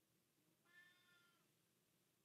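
Near silence, broken by one faint, short, high-pitched call that falls slightly in pitch, lasting under a second.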